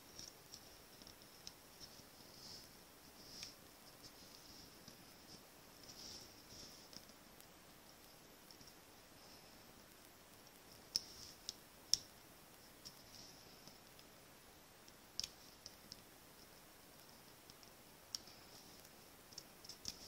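Near silence with a few faint, short clicks and taps from paper pieces being handled and pressed down on a craft mat, the sharpest two just past the middle and single ones later on.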